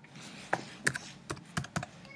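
Typing on a computer keyboard: a handful of separate key clicks, irregularly spaced.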